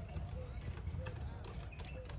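Outdoor background: a low wind rumble on the microphone with faint distant voices and a few soft clicks.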